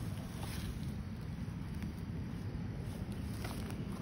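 Quiet outdoor background: a low, steady rumble with no distinct events.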